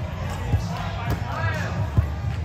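Volleyball being struck by hand: a short sharp smack about half a second in and a louder one at the end, over voices and background music.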